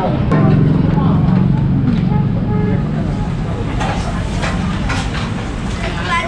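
Street traffic heard through an open storefront: a vehicle engine runs close by, loudest in the first two or so seconds and then fading, over a background of voices.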